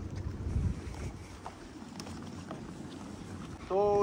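Wind buffeting the microphone as a low rumble, strongest in the first second, with a few faint footsteps on a wooden boardwalk.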